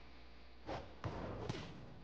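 Faint thuds of a volleyball being bounced on a gym floor before a serve: three sharp knocks, each about half a second apart, beginning about two-thirds of a second in.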